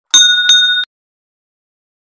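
Notification-bell sound effect: a bright, loud chime struck twice about a third of a second apart, cut off sharply before the first second is out.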